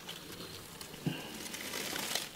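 Faint rustling from a snake hook probing moss and substrate, with one light tap about a second in.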